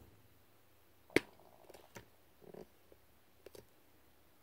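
Handling noise from a camera being repositioned: one sharp click about a second in, then a few faint clicks and light rustles.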